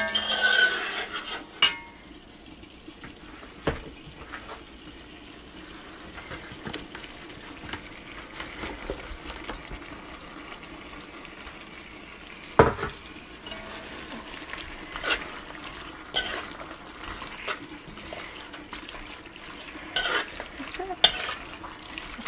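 Cabbage frying in a cooking pot with a low steady sizzle, while a utensil stirs it and now and then knocks against the pot; the sharpest knock comes about halfway through.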